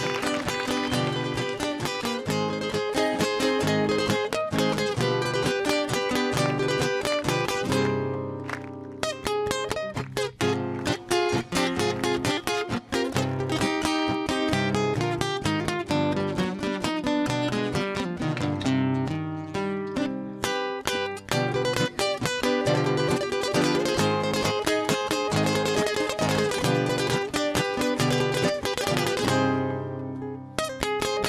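A trio of acoustic guitars playing an instrumental introduction together, with many quick plucked notes over chords. There is a brief lull about eight seconds in, and the playing falls away just before the end.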